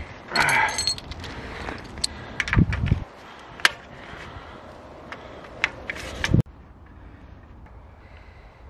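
Plastic tyre levers clicking and scraping against a bicycle wheel's rim and tyre as a flat tyre is levered off: a scrape near the start, then a handful of sharp clicks and a couple of low thumps. The sound cuts off abruptly about six seconds in.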